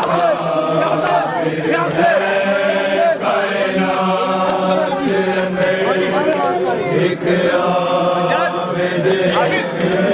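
A group of men chanting a noha together, many voices at once, with scattered sharp slaps that fit hands beating on chests in matam.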